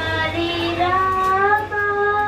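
A young boy singing a slow melody into a microphone, holding long notes and sliding between them.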